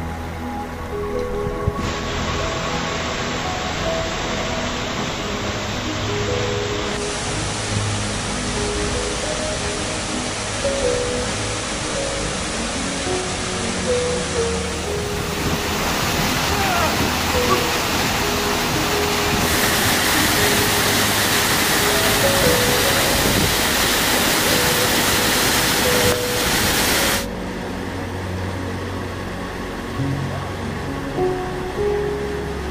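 Rushing water from a mountain stream and waterfall, coming in about two seconds in, stepping louder at each cut and loudest in the second half, then cutting off a few seconds before the end. A steady background music track plays throughout.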